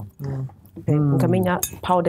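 Light clinks of a glass mixing bowl as hands rub seasoning into fish pieces in it, under a person talking.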